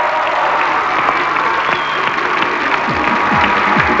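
Studio applause with music playing underneath.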